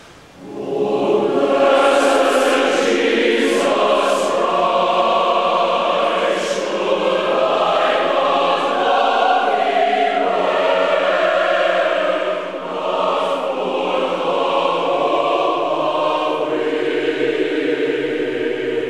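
Large church choir singing together, coming in about half a second in after a brief hush, with a short breath between phrases about two-thirds of the way through.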